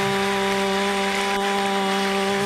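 Congregation applauding under one long held musical note that stays at a single steady pitch.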